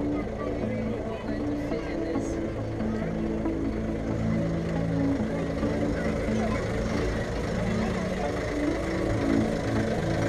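A passenger ferry's engine running with a steady low rumble, under passengers talking. Held musical notes sound over it, changing pitch every second or so.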